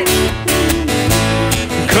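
Acoustic guitar strummed in a steady rhythm, with low bass notes held beneath it, played live.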